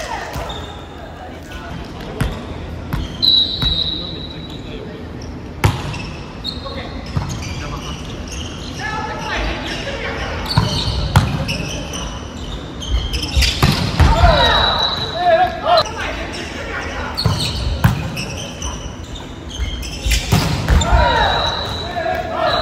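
Indoor volleyball play: the ball being struck and landing gives sharp thumps at intervals, and players' voices call out. All of it echoes in a large gym hall.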